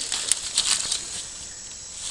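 A few short, sharp rustling crackles in the first second, like handling or movement among dry leaves and old boards, then quieter outdoor background.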